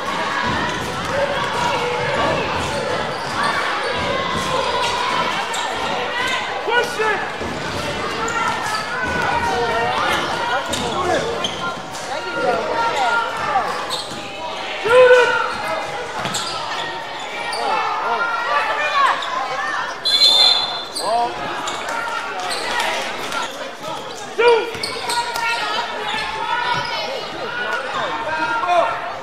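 A basketball dribbling and bouncing on a gym's hardwood floor, echoing in a large hall, with players and spectators calling out throughout and louder shouts about fifteen and twenty-four seconds in. A short high whistle sounds about twenty seconds in.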